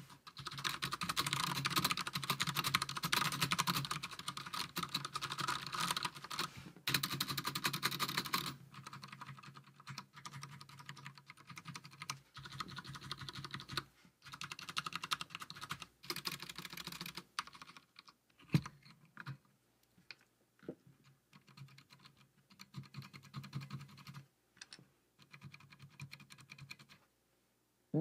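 Typing on a Das Keyboard 4Q mechanical keyboard with Cherry MX Brown switches: a fast, dense run of keystrokes for about eight seconds, then slower, scattered key presses with short pauses. The non-clicky tactile switches give more of a bump and a thud than a click.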